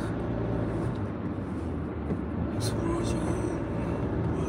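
Car cabin noise while driving: a steady low hum of the engine and tyres on the road.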